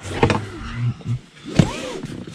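Seat belt being pulled out of its retractor inside a car cabin: rubbing and clicks from the webbing, with a short whir that rises and falls in pitch near the end.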